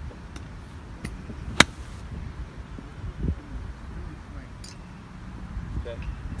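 A golf club striking a ball once on a short pitch shot: a single sharp click about a second and a half in.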